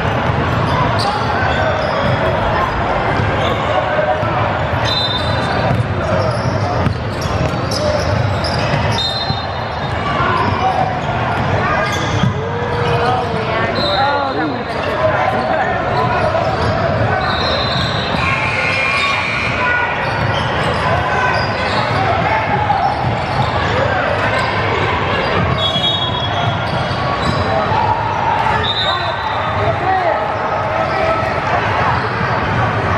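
Basketball game sounds in a large, echoing gym: a ball bouncing on the hardwood court, brief high sneaker squeaks, and players' and spectators' voices calling out.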